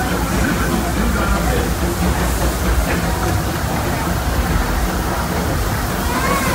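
Steady low rumble and clatter of the Disneyland Railroad's narrow-gauge passenger train rolling along the track, heard from aboard a car.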